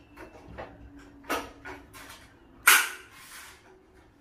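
Zebra-style roller blind's headrail being pushed up into its mounting brackets: a few light clicks and knocks, a sharper knock just over a second in, and a loud snap with a short ringing tail most of the way through.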